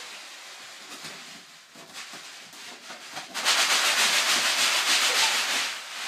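Rubber balloon rubbing and scraping close to the microphone: a loud, scratchy, rapidly fluttering rub that starts about three and a half seconds in and lasts over two seconds, with fainter rubbing before it.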